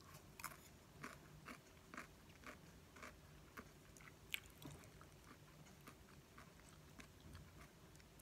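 Faint chewing of a mouthful of fried instant noodles, with small wet mouth clicks about twice a second that thin out after the first few seconds, and one sharper click about four seconds in.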